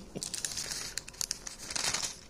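Thin Bible pages rustling and crinkling as they are leafed through, with a louder rustle near the end.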